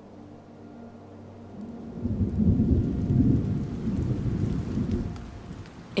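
A long, low rumble of thunder swells up about two seconds in and dies away near the end, after a faint sustained low tone at the start.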